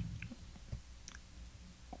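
A few faint, short mouth clicks and lip sounds from a man pausing mid-sentence close to his microphone, over quiet room tone.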